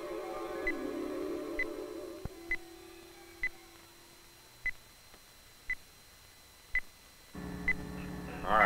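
Short high sonar beeps about once a second: a lost test torpedo's acoustic pinger as heard through the sonar receiver. Held low music tones underneath fade out about halfway through, and a low hum comes in near the end.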